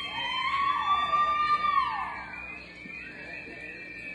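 Spectators whooping: one long drawn-out yell that rises, holds and falls away about two seconds in, with other shouts overlapping and fainter calls near the end.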